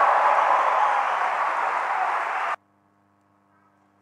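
Crowd applause after a point, a loud dense clapping that cuts off suddenly about two and a half seconds in, leaving near silence with a faint hum.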